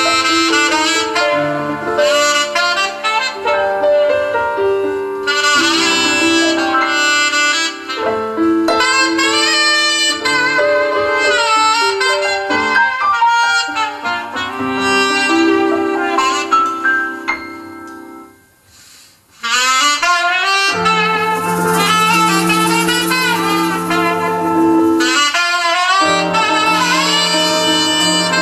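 Saxophone playing a melodic line over held keyboard chords. About two-thirds through, the playing breaks off for a moment, then comes back in with the full band: bass and cymbals join underneath.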